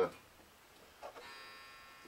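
A bar clamp being handled on the workbench: about halfway through, a light knock, then a faint high metallic ring that slowly fades.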